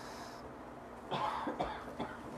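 A man coughing, in two bursts starting about a second in.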